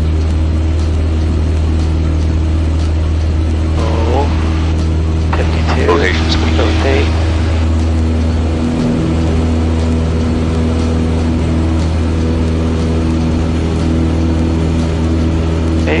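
Single-engine light aircraft's carbureted piston engine and propeller running steadily at full takeoff power through the takeoff roll, rotation and initial climb, a loud low drone heard inside the cabin.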